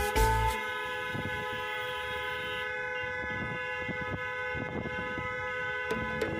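A vehicle horn toots briefly at the start, over steady sustained tones and low road rumble.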